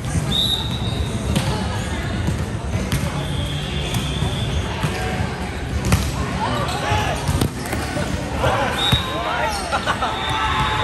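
Volleyball rally in a large gym: a few sharp smacks of the ball being hit, the loudest about six seconds in, with sneakers squeaking on the hardwood court and players' voices in the background.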